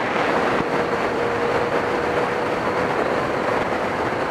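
Motorcycle riding at road speed, heard through an action camera's built-in mic: heavy wind rush with a steady hum under it.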